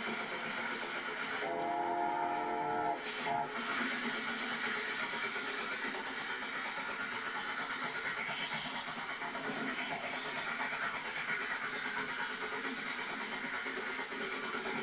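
Steam locomotive 71000 Duke of Gloucester passing with its train, with the steady noise of the engine and carriages throughout. About a second and a half in it gives a whistle lasting about a second and a half, then a short second toot.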